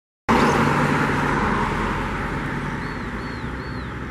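A road vehicle passing close by, its noise loud at first and fading away steadily; three short high chirps near the end.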